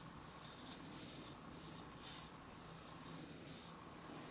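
Wide paintbrush wet with sodium hydroxide solution being swept back and forth over paper: a soft, scratchy brushing in repeated strokes, roughly two a second.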